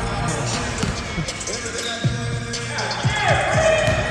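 Basketball being dribbled on a hardwood gym floor, a run of repeated bounces.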